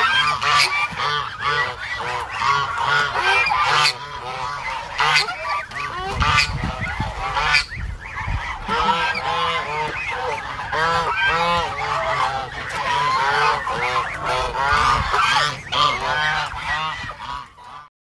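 A flock of domestic ducks calling continuously, many short harsh calls overlapping several times a second. The calls fade out at the very end.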